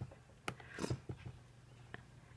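Faint handling sounds of a round blending brush on a clear acrylic plate and paper: a few light, scattered taps and a soft brushing hiss.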